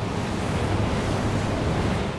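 A steady rushing noise with a low rumble beneath it.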